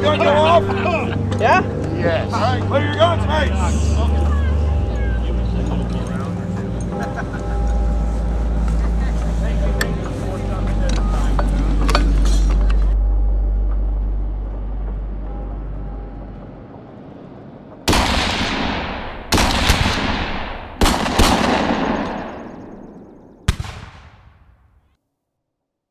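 Music with sustained low bass notes that change in steps, fading out; then four black-powder cannon shots, each a sudden blast with a long rumbling tail, about a second and a half apart.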